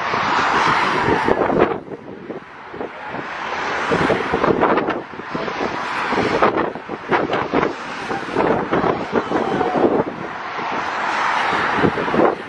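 Highway traffic passing close by, the noise of each car swelling and fading, with wind buffeting the microphone and short sharp knocks of handling noise.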